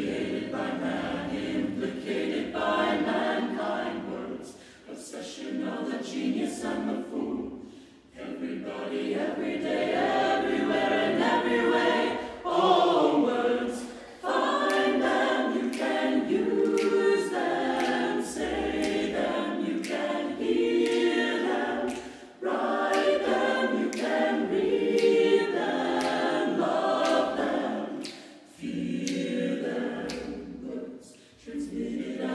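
Mixed chamber choir singing a cappella, in phrases that break off briefly every few seconds, with crisp consonants clicking through the singing.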